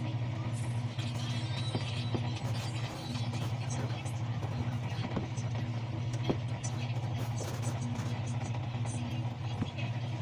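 A steady low hum runs throughout, with faint rustling and small clicks as hands work through the hamster cage's shredded bedding.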